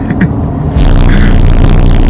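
Quiet car-cabin hum, then about three quarters of a second in a sudden, very loud, distorted, bass-heavy rumble cuts in and holds: an edited-in "triggered" meme sound effect, deliberately blown out.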